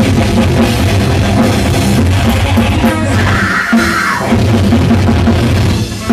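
Heavy metal band playing live: distorted electric guitars, bass and drum kit, loud and dense. The low end drops out briefly about three and a half seconds in, then the full band comes back in.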